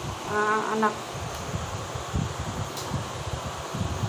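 A voice briefly calls out 'anak', then a steady buzzing background noise with gusty low rumbling on the microphone.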